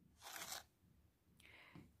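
A small plastic spoon scooping ground spice out of a glass jar: one short, faint scrape, then a fainter rustle about a second and a half in, with near silence around them.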